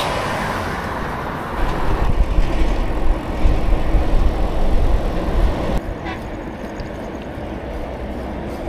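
Traffic and wind noise heard from a bicycle riding along a highway beside heavy trucks: a steady rush with a heavy, uneven low rumble from about one and a half seconds in. Near six seconds it changes suddenly to a steadier, quieter rush.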